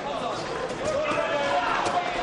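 Voices and crowd noise in a boxing arena, with a few short thuds of gloved punches landing, the sharpest near the end.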